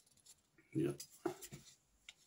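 A man's voice briefly saying "yeah", with faint clicks and rubbing from a small perfume bottle being handled.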